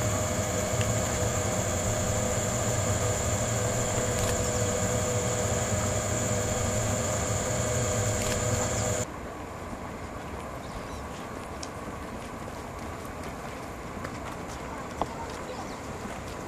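Electric train's steady machinery hum with a high whine. It cuts off abruptly about nine seconds in, leaving quieter background noise with a few faint clicks.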